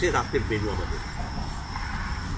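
Crickets chirping steadily in a high, even trill, with a voice talking briefly in the first half second or so.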